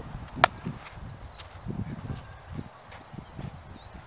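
A single sharp, ringing crack of a bat striking a baseball, about half a second in, far louder than anything else.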